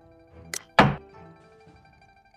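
Xiangqi board app's piece-move sound effect: a light click about half a second in, then a loud thunk as the cannon piece is set down on its new point. Soft background music with plucked strings plays underneath.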